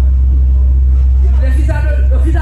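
A loud, steady low hum under a woman's voice speaking through a microphone. The voice falls away briefly and resumes about one and a half seconds in.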